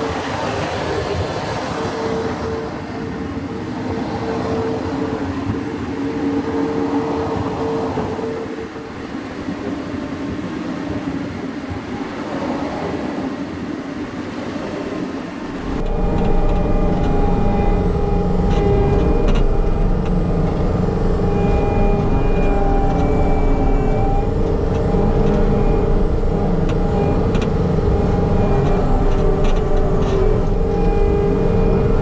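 Compact track loader's engine running as the machine works and drives over the dirt, with a steady hum. For the first half it is heard from outside. About 16 seconds in it becomes louder and closer, with a heavier low rumble, heard from inside the cab.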